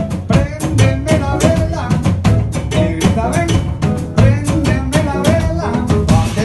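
Live Afro-Peruvian jazz band playing: drum kit and cajón keeping a busy rhythm under double bass, piano and electric guitar.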